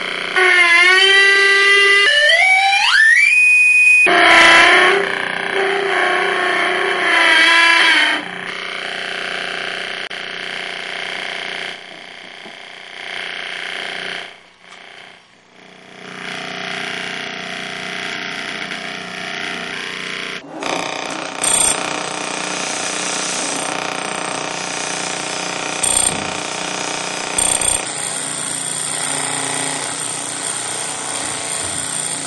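Electronic synthesized sound: a pitched tone with many overtones slides upward over the first few seconds, then steady held tones, giving way to a noisy electrical drone with a few short high beeps in the second half.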